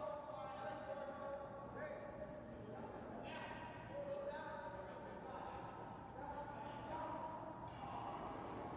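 Faint, drawn-out shouted calls from curlers on the ice, heard at a distance, several times, over a steady low hum of the curling rink.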